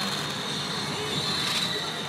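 Steady din of a pachinko parlor: a constant wash of machine noise with faint electronic sound effects from the pachinko machine being played.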